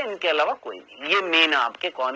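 A man speaking Hindi, lecturing; only speech is heard.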